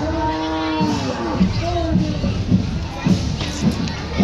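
One of the white humped draught cattle pulling the cart mooing: one call of under a second at the start, then a brief second call about a second and a half in. Loud music with a steady beat and crowd noise run underneath.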